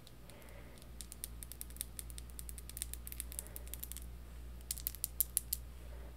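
Metal chain bracelet with a heart charm handled close to the microphone: light, irregular clicks of the links moving against each other, coming thicker and louder about five seconds in.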